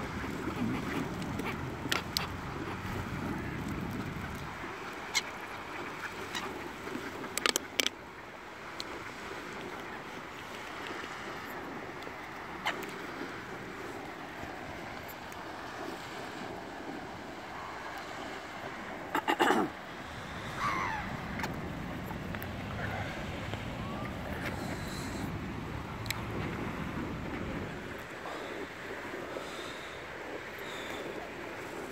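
Outdoor ambience: a steady background rumble with scattered bird calls, ducks quacking among them, and a few sharp knocks, the loudest about two-thirds of the way through.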